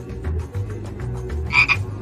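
A frog croak sound effect, one short call about one and a half seconds in, over background music with a low, pulsing bass.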